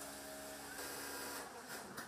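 A machine in a sewing workshop running with a steady hum that stops about a second and a half in, with a brief hiss in the middle.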